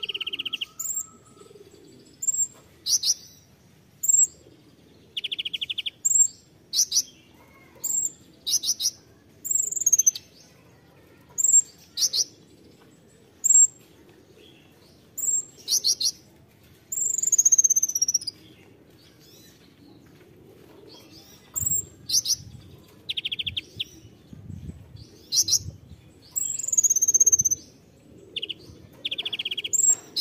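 Male Van Hasselt's sunbird (kolibri ninja) singing its sharp, high 'tembakan' notes: short piercing chips and down-slurred whistles every second or two, mixed with brief buzzy trills near the start, about five seconds in, past the middle and near the end.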